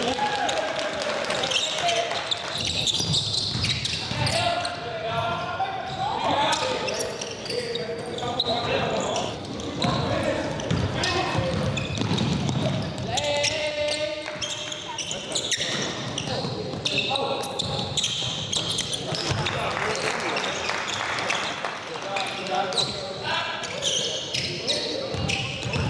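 Live sound of a basketball game in a gym: a basketball bouncing on the hardwood as it is dribbled, under indistinct shouting and talk from players and spectators.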